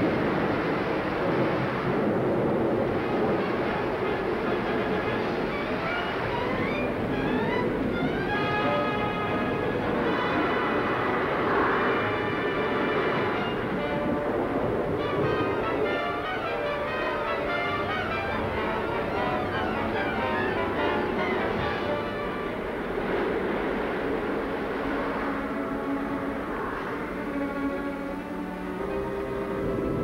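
Dramatic orchestral film music, with quick rising runs several seconds in, played over a continuous rushing noise of storm and flood water.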